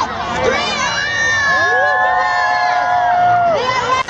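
A large crowd screaming and cheering, many high-pitched voices overlapping, with several long held screams through the middle.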